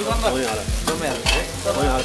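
Metal spatula stir-frying vegetables in a wok, with repeated scraping strokes against the pan over steady sizzling.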